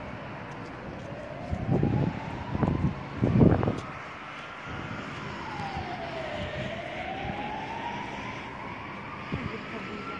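Emergency vehicle siren wailing, its pitch rising and falling slowly over several seconds. A few loud low bursts of wind buffeting the microphone come between about one and a half and four seconds in.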